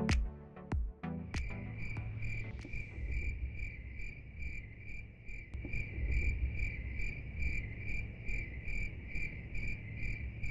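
Electronic music ends with a last beat in the first second. Then comes regular insect chirping, like a cricket: short chirps on one high pitch, about two to three a second, over a low rumble.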